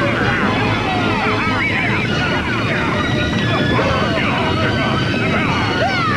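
Busy cartoon soundtrack: many overlapping high, warbling squeals and chirps that rise and fall in pitch, over a steady noisy rumble.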